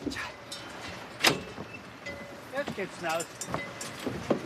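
A few sharp knocks from the cattle trailer's wooden ramp and metal grate as a cow is let off, the loudest about a second in. An indistinct voice calls in the second half.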